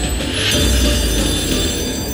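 Money Link slot machine playing its electronic win music and chimes over a steady bass as the Mini jackpot is awarded and the win meter counts up, with a bright burst of sparkle about half a second in.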